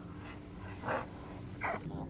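Two short whirring bursts, about three-quarters of a second apart, from a spinning reel being cranked to take up slack line between jerks of a heavy jig, over a low steady hum.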